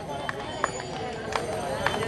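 Scattered sharp knocks and footfalls on the stage boards, a few short taps spread unevenly across the two seconds, over a low background of voices.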